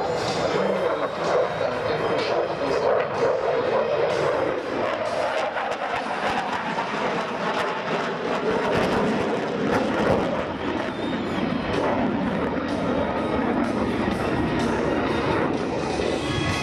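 Dassault Rafale's twin Snecma M88 jet engines at high power with afterburner lit during a tight display turn: a steady, loud jet noise that holds throughout.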